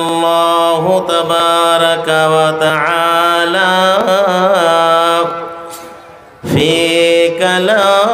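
A man's voice chanting unaccompanied in a slow, drawn-out melody, with long held notes that waver and ornament in pitch. The voice fades and breaks off about five and a half seconds in, then picks up again about a second later.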